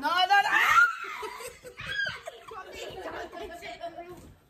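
People laughing and snickering, mixed with bits of voices, loudest and highest-pitched in the first second.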